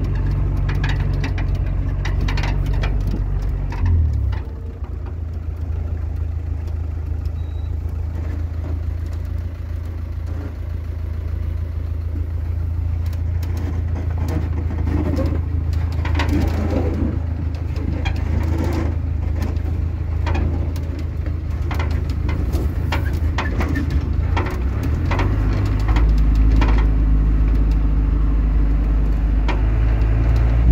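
Engine of an off-road FSO Polonez running as the car drives over a rough dirt track, heard from inside the cabin. The engine note drops about four seconds in and grows louder and deeper near the end, with frequent short knocks and rattles throughout.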